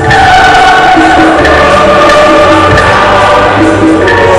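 A church choir singing loudly with instrumental backing, voices holding a long note early on over a steady bass line.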